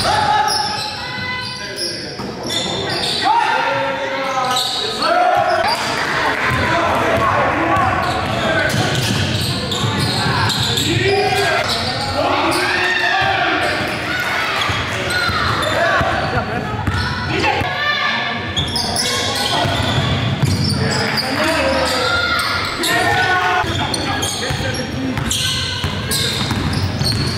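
Live sound of a basketball game in a gym: a basketball bouncing on the hardwood court as it is dribbled, with players' voices calling out, all echoing in the large hall.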